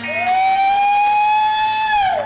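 Electric guitar holding one loud, high note for about two seconds, sliding up into it at the start and dropping away at the end.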